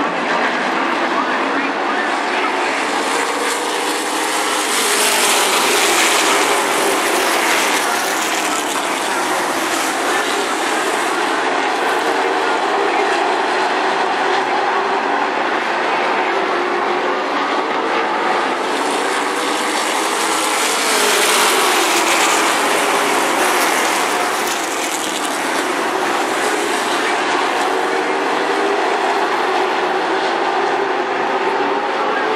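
A field of late model stock cars running hard at racing speed, their V8 engines making a continuous din. The sound swells as the pack passes close twice, about 6 and 21 seconds in, with the engine note sweeping in pitch as the cars go by.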